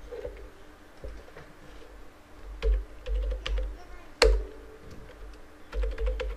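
Typing on a computer keyboard: irregular, scattered key clicks with dull thumps under them, and one sharper, louder click about four seconds in.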